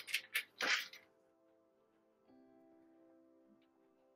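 A few short plastic clicks and rustles in the first second as a clear plastic compartment tray is set down on a wooden table, then faint background music with held notes.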